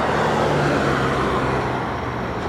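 Steady motor-vehicle noise, engine hum and tyre rush of traffic going by, swelling slightly early on and easing off toward the end.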